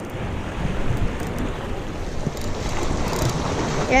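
Small waves washing against jetty rocks, a steady wash of water noise, with wind buffeting the microphone.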